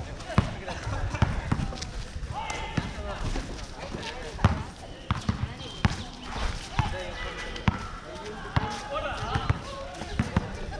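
Basketball being dribbled on a hard outdoor court, single bounces at irregular intervals, with people talking at times.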